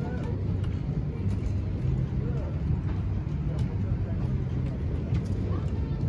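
Wind on the phone's microphone, a steady low rumble, with faint indistinct voices of people in the background.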